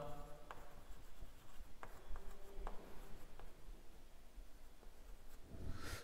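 Chalk writing on a blackboard: faint, scattered scratches and taps of the chalk.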